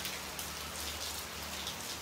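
Steady rain falling, an even hiss.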